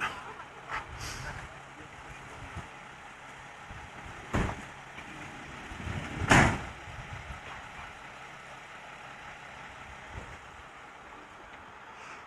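Outdoor background noise with a steady low rumble, broken by a few knocks; the two loudest come about four and a half and six and a half seconds in.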